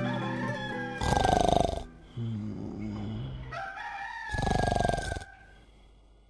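A rooster crowing twice, about three seconds apart, over soft music.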